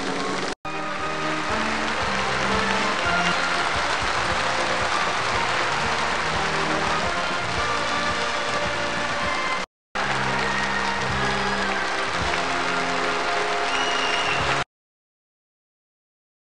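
Audience applause mixed with music from a staged performance. It breaks off twice for a split second and cuts off abruptly near the end.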